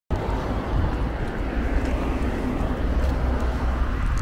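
Steady outdoor background noise with a strong low rumble and a few faint clicks.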